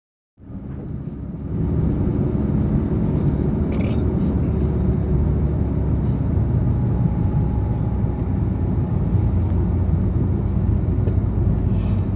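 Steady low rumble of a car driving, heard from inside the cabin: engine and tyre noise. It comes in just after the start and grows louder about two seconds in.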